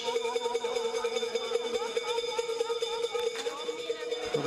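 A distant voice over a steady hum, with no clear rifle shots.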